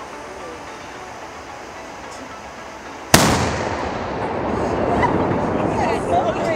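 A smoke firework going off: a sudden loud bang about three seconds in, followed by a sustained rushing noise as the plume of smoke pours out.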